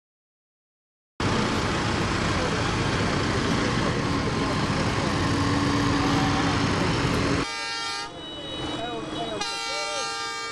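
Farm tractors driving past at close range, their engines loud, with horns sounding over the engine noise. About seven seconds in, the engine noise drops away and a steady, held horn blast remains, dips briefly, then sounds again.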